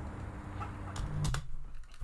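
A few sharp clicks over the low, steady hum of the music video's soundtrack. The hum cuts off about a second and a half in, as if the video were paused.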